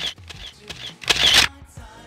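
Camera handling noise: a few short clicks and rustles, then a brief louder burst of noise about a second in.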